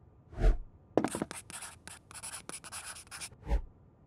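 Marker pen scratching across a whiteboard in a quick run of short strokes for about two seconds, with a dull thud just before and another near the end.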